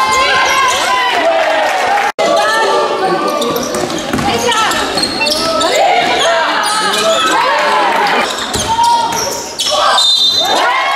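Basketball game sound on a gym court: sneakers squeaking on the floor and the ball bouncing, with players and spectators calling out. The sound drops out for an instant about two seconds in.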